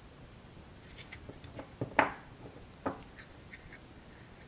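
Small clicks and knocks from desoldering a circuit board with solder wick and a soldering iron, scattered and faint, the loudest about halfway through.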